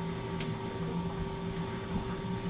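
Classroom room tone under a steady electrical hum, with one faint tick about half a second in.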